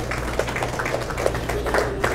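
Audience applauding, a dense patter of many hand claps, over a low steady hum.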